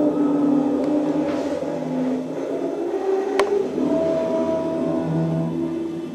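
String quartet with prepared strings (two violins, viola and cello) playing long held notes that overlap and shift slowly in pitch. A single sharp click sounds about three and a half seconds in.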